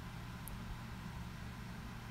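Quiet room tone: a steady low hum with a faint even hiss.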